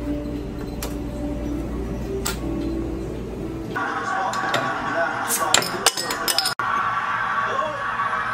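Crown cap of a glass beer bottle prised off with a bottle opener: a quick cluster of sharp metallic clicks and clinks between about five and six and a half seconds in. Before that there is a steady low hum with a couple of single clicks.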